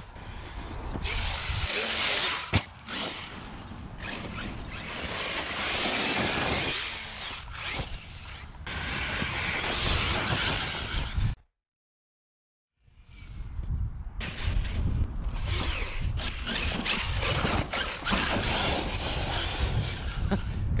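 Arrma Fireteam 1/7 RC truck running hard over dirt: its brushless motor and drivetrain whine over the scrabble of tires on loose dirt. There is a sharp knock about two and a half seconds in, and the sound cuts out completely for about a second midway.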